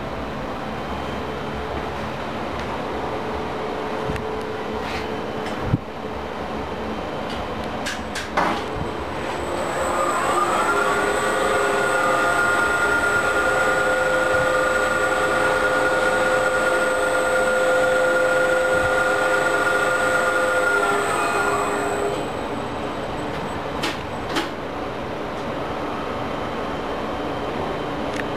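A 2001 LG-Otis geared traction elevator machine makes a trip. After a few sharp clicks, a motor whine rises about nine seconds in and holds steady for about ten seconds with a high thin tone above it. The whine falls away as the machine slows and stops, followed by a couple more clicks.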